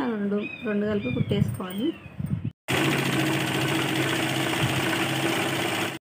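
A woman speaking, then after an abrupt cut a steady mechanical hum with an even low drone for about three seconds, which cuts off suddenly.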